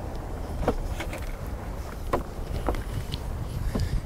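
Manual soft top of a 2013 Corvette convertible being folded by hand: five or so scattered light clicks and knocks from the top's frame and fittings over a steady low rumble.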